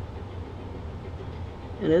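Steady low hum of background room noise with a faint hiss, and no distinct knocks or scrapes. A spoken word comes right at the end.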